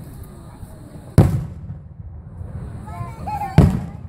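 Aerial firework shells bursting overhead: two loud booms about two and a half seconds apart, each fading out over about half a second.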